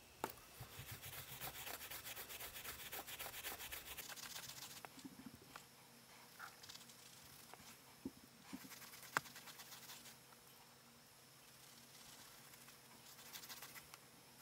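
Faint, rapid scratchy rubbing of a thumb and fingers working paint into synthetic yarn fur for the first few seconds. Then come a few soft brushing touches, a single light click about nine seconds in, and more rubbing near the end.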